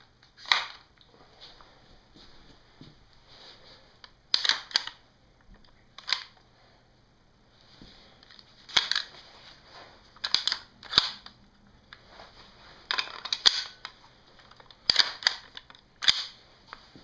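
Sharp mechanical clicks and clacks from a Colt M4 .22 LR rifle by Umarex as it is handled. They come singly or in quick pairs, about a dozen times at uneven intervals.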